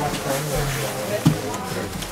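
Other people talking quietly nearby, their voices low and indistinct, with a short dull knock a little past the middle.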